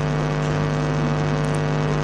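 Steady electrical mains hum from a public-address microphone and amplifier system: a low, even buzz that holds unchanged.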